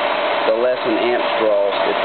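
Half-horsepower electric motor running steadily at speed, spinning the magnet rotor of a homemade magnetic induction heater, with a steady hum and whine; it spins freely with no vibration.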